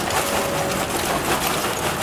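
Charcoal pouring out of a bag onto a grill bed: a continuous clatter of small lumps and a rustle of dust and bag. The charcoal is a dusty, small-lumped, poor-quality one.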